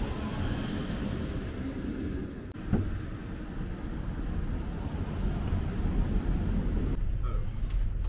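Electric passenger train at a station platform: a low, steady rumble with outdoor air noise. About two and a half seconds in there is a sharp click, and from about five seconds in a steady low hum.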